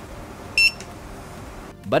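A single short electronic beep from a JC P13 NAND programmer, a high tone about half a second in, sounding while the programmer is detecting a NAND chip in its socket. Quiet background music runs underneath.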